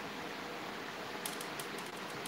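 Steady room hiss with a quick run of faint, sharp clicks a little past halfway.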